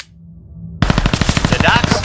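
Rapid automatic-gunfire sound effect, roughly twenty shots a second, bursting in about a second in. Before it come a sharp click and a low rumble that builds.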